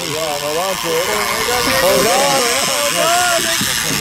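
Big-game fishing reel's drag running with a steady, high hiss as a hooked shark strips line off the spool, with excited voices shouting over it.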